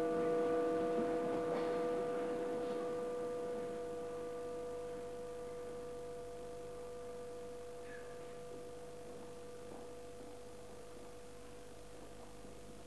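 A bell's several steady tones ringing on after being struck, fading slowly away.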